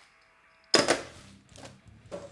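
Handling of a metal tin lunch box and its contents: a sharp clack about three quarters of a second in, then a softer tap near the end.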